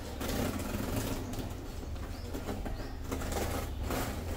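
Cardboard shipping box and its paper packing rustling and crackling as it is pulled open by hand, irregular and in short bursts, over a low steady rumble.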